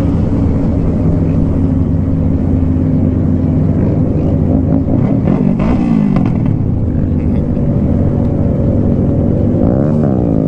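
Motorcycle engine running steadily at highway cruising speed, heard from the rider's seat, with other motorcycles riding close by. About halfway through, engine pitch briefly rises and falls.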